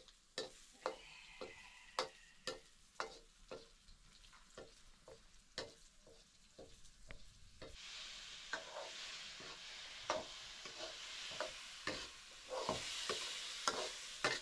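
Metal ladle scraping and knocking against a black iron wok over a wood fire, about two strokes a second. About eight seconds in, a steady sizzle starts as food goes into the hot oil, and the ladle keeps stirring through it.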